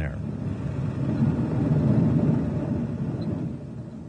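Light bush plane on a dirt airstrip: a steady rumble of engine and rolling wheels that swells in the middle and fades near the end.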